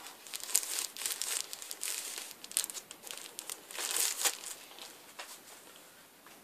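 A vinyl record sleeve being handled, crinkling and rustling in irregular bursts that die away after about four and a half seconds.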